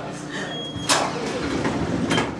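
Elevator doors sliding shut, with a sharp click about a second in, over people laughing.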